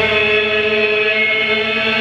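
Violin bowing one long, steady note with many overtones, a sustained drone.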